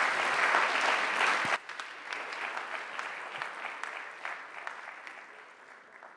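Audience applause, dense at first, dropping abruptly about a second and a half in to thinner clapping that fades out toward the end.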